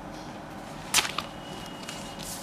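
A clear plastic sheet-protector page is flicked over in a binder: one sharp crackling snap about halfway through, then a small click.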